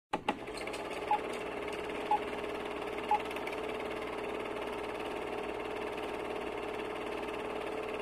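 Film projector sound effect: a steady mechanical whirr and clatter with three short beeps a second apart, in the manner of a countdown leader, after a couple of clicks at the start.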